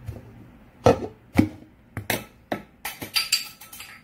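Hard plastic lids of a measuring cup clicking and knocking together in a series of sharp strikes, bunching up toward the end, as the small lid is pressed down onto the big lid and pops up, pushed off by the air trapped inside.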